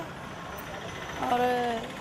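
Steady street traffic noise fills a short pause in a woman's speech. About a second in, she holds one drawn-out syllable for about half a second.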